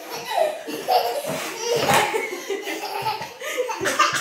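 A woman and a small child laughing heartily together in bursts, with a knock about two seconds in.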